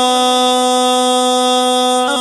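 A voice in a Pashto tarana holds one long note at the end of a sung line. The pitch is very steady, without vibrato.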